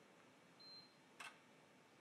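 Near silence, with one faint, short high-pitched beep about half a second in from an HT PV-ISOTEST photovoltaic insulation tester running a 1500 V insulation test, and a faint click just after a second in.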